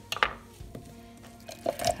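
Onion pieces dropped by hand into an empty plastic blender cup, clattering near the end, after a single sharp knock about a quarter second in; faint background music runs underneath.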